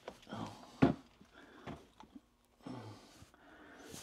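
Soft breathing and low grunts from a man working overhead on a closet rod and its mounting hardware, with a sharp knock about a second in and quiet handling noises.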